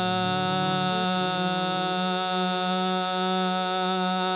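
Indian devotional bhajan music: a male voice with harmonium holds one long, steady note, with no drum beat.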